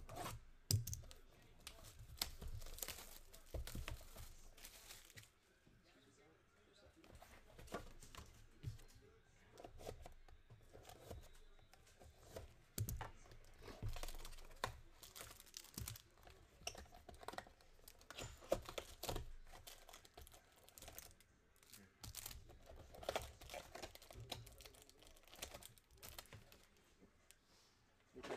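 Plastic wrap and foil trading-card pack wrappers being torn open and crinkled by hand, in irregular bursts of sharp crackling.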